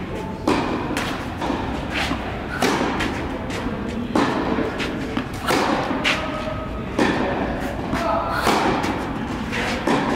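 Tennis ball struck by rackets and bouncing during a baseline rally, a sharp hit about every second to second and a half, each ringing on in the echo of a large indoor hall.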